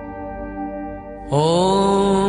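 Devotional mantra chanting with music: a steady drone of held tones. About a second in, a singing voice enters, sliding up in pitch into a loud, long held note that starts the next chanted line.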